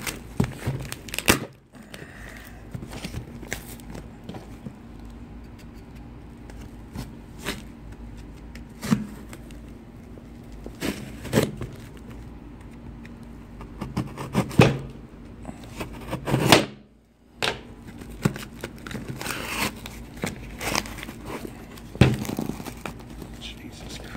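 A heavily taped cardboard box being cut and torn open by hand with a knife: crackling and tearing of packing tape and cardboard, broken by several sharp knocks of the box against a glass tabletop.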